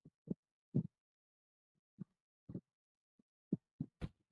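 About eight faint, short low thumps at irregular intervals, several bunched near the end, with dead silence between them.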